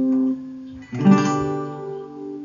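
Acoustic guitar capoed at the fifth fret: a G chord rings out and fades, then a D/F# chord is strummed about a second in and left to ring.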